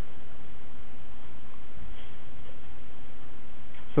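Steady, even hiss of room or recording background noise, with no distinct events.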